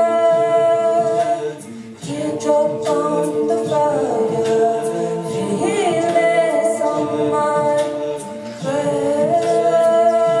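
Mixed a cappella choir singing held chords over a steady beat of sharp percussive strikes, vocal percussion from a singer on a microphone. The singing drops briefly about two seconds in and again near the end, between phrases.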